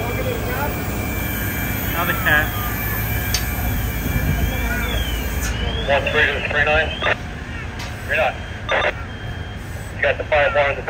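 Steady low rumble of fire apparatus engines running at a fire scene, with voices and radio chatter over it. The rumble steps down a little after about five and a half seconds.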